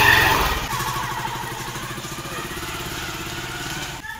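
Motorcycle engine pulling away, its exhaust beat loud at first and fading steadily as the bike rides off.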